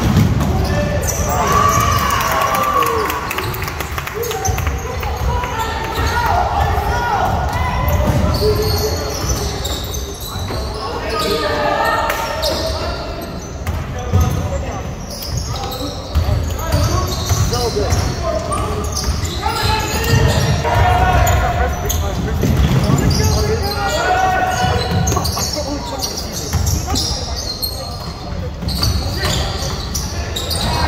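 Basketball dribbled and bouncing on a hardwood gym floor during play, with players and spectators calling out, echoing in the gymnasium.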